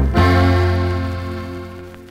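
Closing chord of a Mexican corrido band, struck just after the start and left to ring out, fading steadily away.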